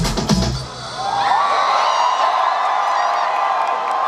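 A K-pop song played live over a stage PA ends on its last beats about half a second in; then a crowd of fans cheers and screams in high voices.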